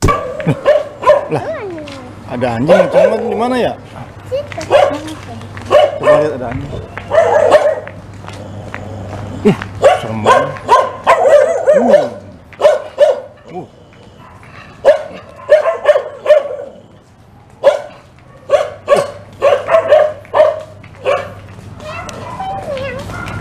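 Several fierce dogs barking loudly and repeatedly in clusters of barks with short pauses between them.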